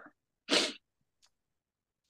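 A single short, breathy puff of air from a person, about half a second in, like a sharp exhale through the nose or mouth.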